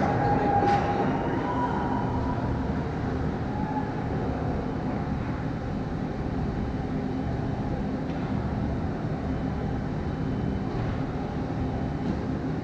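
Steady low rumble of an indoor ice rink's room noise, with a distant sharp knock less than a second in.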